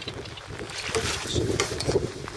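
Wind buffeting the microphone over water sloshing against the side of a small fishing boat, an uneven rumbling noise without any steady engine tone.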